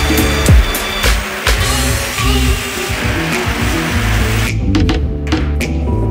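Background music with a beat, over the motor and cutting noise of a Black+Decker Matrix cordless drill with its router attachment routing a hole through an acrylic plate. The routing stops about four and a half seconds in, leaving the music alone.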